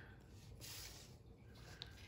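Faint scratch of a pencil drawing a line along a plastic ruler on paper, with a light tick near the end.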